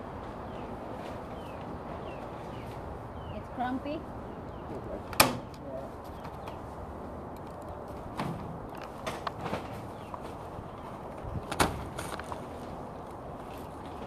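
A few sharp knocks over steady background noise, the loudest about five seconds in and again near twelve seconds, with smaller ones in between. Faint, indistinct voices can be heard at times.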